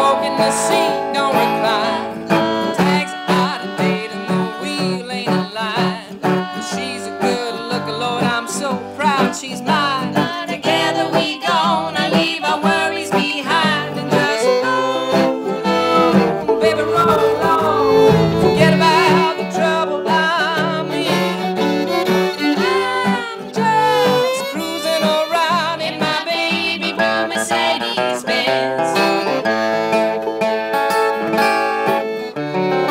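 Old-time string band playing an instrumental passage: fiddle bowing gliding melody lines over strummed acoustic guitar and banjo.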